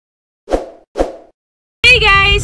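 Two short pop sound effects, about half a second apart, each dying away quickly. A woman's voice begins just before the end.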